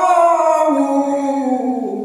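A man singing a Kashmiri Sufi manqabat with no instruments, holding one long note that slides slowly down in pitch and moves to a lower note near the end.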